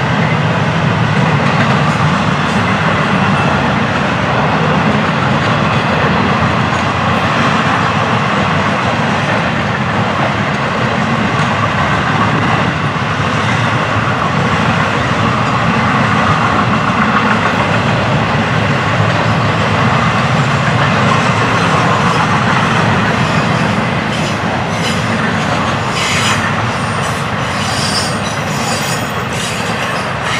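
Freight train of intermodal flatcars rolling past at close range: a steady rumble of steel wheels on rail. In the last few seconds sharp high clicks and squeaks from the wheels come through as the level eases and the end of the train goes by.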